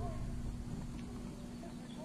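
Outdoor ambience: a few short bird chirps over a steady low hum, with a low rumble that fades away in the first second.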